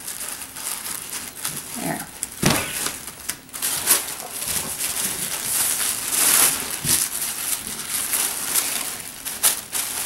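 Tissue paper rustling and crinkling as it is pressed down and handled, in irregular swishes, with a single knock on the table about two and a half seconds in.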